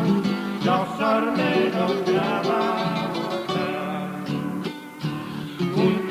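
Acoustic guitars playing an instrumental passage of Argentine Cuyo folk music, a plucked melody over a strummed rhythm, with a brief dip in loudness about five seconds in.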